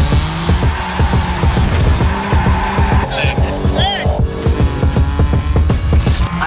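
Straight-piped BMW M4 drifting, its tyres squealing and engine revving, under music with a fast steady beat.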